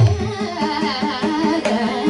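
Live Carnatic–Hindustani classical music: a woman singing a winding, ornamented melodic line with violin accompaniment. Low drum strokes stop just after the start.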